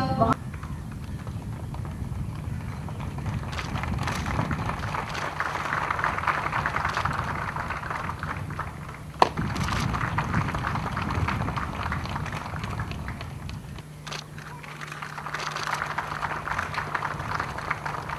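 Audience applauding as an award is presented, swelling and fading in waves. There is a single sharp click about halfway through.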